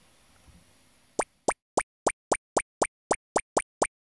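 Cartoon sound effect: a run of eleven short, sharp plops, evenly spaced at about four a second, starting about a second in after faint room tone.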